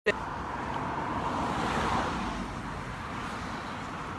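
A car passing on the street, its road noise swelling to a peak about two seconds in, then fading.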